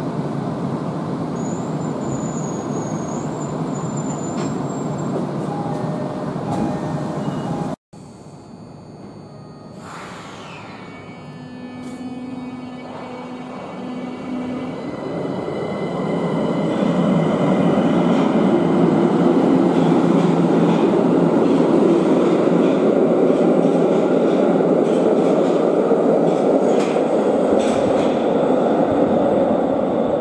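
Steady noise inside a Tokyo Metro Ginza Line 1000-series subway car, then that train departing from the platform: its traction motor whine rises in pitch as it accelerates, and the running noise grows loud as it pulls past into the tunnel.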